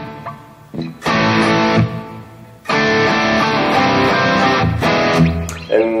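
Electric guitar playing a rhythm break of power-chord shapes (A, D and C, the last two with the fifth in the bass), struck in short repeated groups with rests. A chord rings out and fades, a short group of hits comes about a second in, then a pause, then a long run of chord hits from under three seconds in to near the end.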